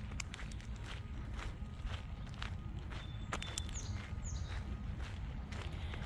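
Footsteps crunching on a gravel road at a walking pace, about two steps a second. Two short high chirps, falling in pitch, come a little past the middle.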